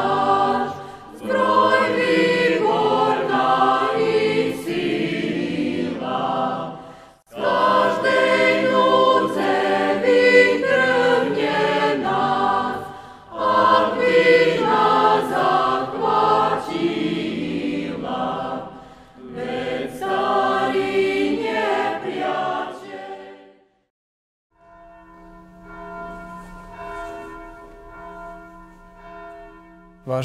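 A group of voices singing a hymn in four phrases with short breaks between them, then, after a moment of silence, softer held tones for the last few seconds.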